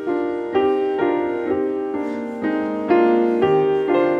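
Piano playing a slow run of chords, a new chord struck about twice a second and each left to ring and fade.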